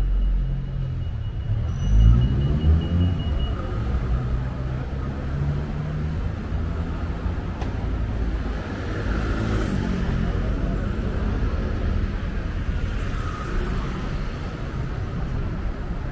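City street traffic: a steady low rumble of car engines and tyres. A vehicle close by accelerates with a rising engine note about two seconds in, the loudest moment, and another engine rises in pitch around the middle.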